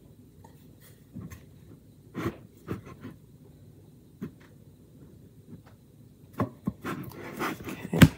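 Light knocks and rubbing from hands pressing glued letters onto a wooden sign and shifting the board on a cutting mat: a few scattered taps, then a busier run of handling noise near the end.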